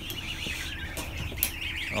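A large flock of ducklings peeping all at once, a dense continuous high-pitched chatter, with a low steady hum underneath and a few light knocks.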